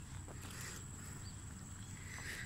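Faint footsteps of a person jogging on a paved sidewalk, a few light steps over a low steady rumble.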